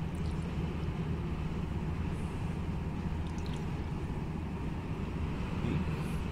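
Steady low drone of a heavy truck's engine and road noise heard inside the cab of a Renault Magnum tractor unit cruising on a motorway at about 88 km/h.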